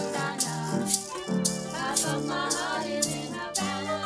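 Bouzouki, violin and upright piano playing a tune together live, bowed violin notes over plucked bouzouki and piano. A shaker rattles along on the beat, about two shakes a second.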